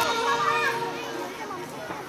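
A lull in the dance music: the song fades away, leaving children chattering and calling in the background.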